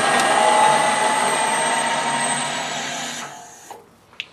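Colchester Bantam metal lathe running with its four-jaw chuck spinning, then switched off about two and a half seconds in: the steady machine noise fades and its pitch sinks slightly as the spindle winds down to a stop.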